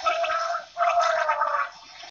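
Cartoon character's voice gurgling underwater, in two bursts with a short break just under a second in.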